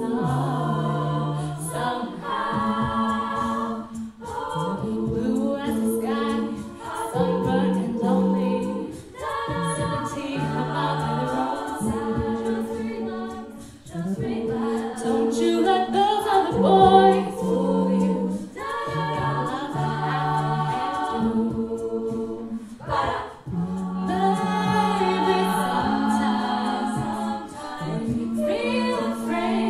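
Female a cappella group singing: a lead voice on a microphone over sustained backing chords, a sung bass line and vocal percussion.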